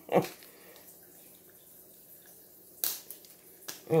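Blue-and-gold macaw biting into a pecan held in its foot: mostly quiet, then a sharp crack of the shell about three seconds in and a smaller click a moment later.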